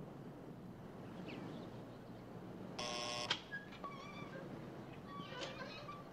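A gate intercom buzzes once, a flat electric buzz lasting about half a second about three seconds in. Short, faint high chirps follow over a low background hum.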